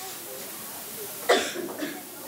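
A person coughing: one sharp cough a little over a second in, with a smaller follow-up, over a low murmur of voices.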